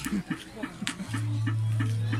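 Combo Boxer arcade strength-testing machine sounding short electronic tones as its score counts up after a kick, then a steady low electronic tone from about a second in.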